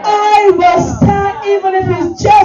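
A high voice singing a slow melody, holding long notes and stepping between pitches.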